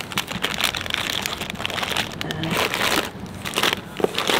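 Plastic-wrapped snack packets crinkling and rustling as they are picked through and lifted out of a cardboard box, in a run of irregular crackles.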